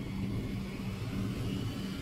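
Propeller-driven World War II bombers' piston engines droning in flight, a steady low hum that throbs slightly.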